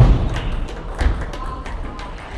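Sports-hall ambience between points: a low thud at the start and another about a second in, with scattered sharp clicks of table tennis balls from nearby tables over a steady murmur of the hall.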